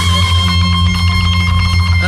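Live band of acoustic and electric guitars with bass playing a steady held chord between sung lines.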